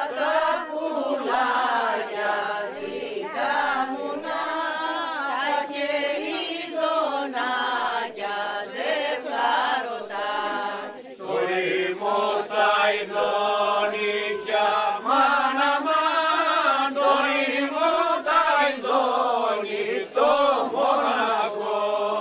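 A group of people singing a song together unaccompanied, in long drawn-out notes.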